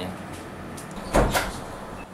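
A sudden dull double thump a little over a second in, over faint room noise.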